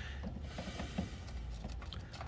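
Faint clicks and light knocks of an extension-cord plug being handled and pushed into the outlet panel in a pickup's bed, over a low steady background rumble.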